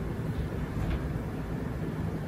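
Steady low background rumble of room noise, with no distinct events.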